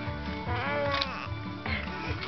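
A baby's short high-pitched squeal, rising and then falling, about half a second in, over background music with a steady beat.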